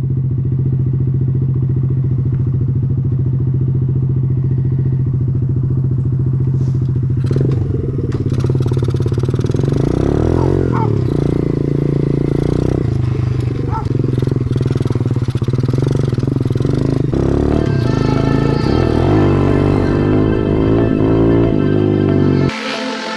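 Pit bike engine idling steadily, then revving up and down repeatedly from about seven seconds in as the bike rides off.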